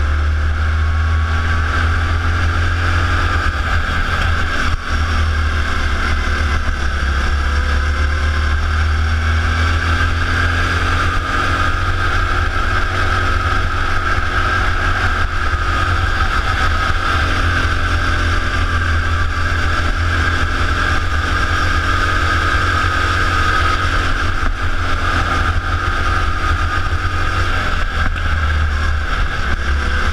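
Go-kart engine heard from on board, running hard and continuously around the track, its high buzz easing and rising slightly in pitch through the corners. A deep steady rumble sits underneath throughout.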